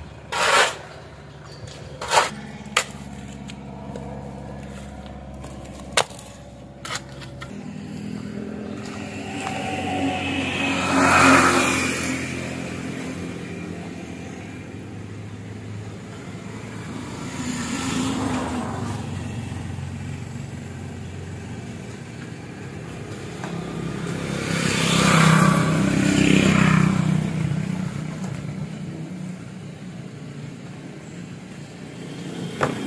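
A steel shovel scraping and knocking on a concrete floor while mixing sand and cement, a handful of sharp strokes over the first seven seconds. Then three road vehicles pass one after another, each swelling and fading over a few seconds, the last the loudest.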